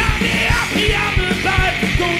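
Punk-rock band playing an instrumental passage: fast, driving drums with distorted electric guitars and bass. Over it a lead line bends up and down in pitch, an amplified harmonica played cupped against the vocal microphone.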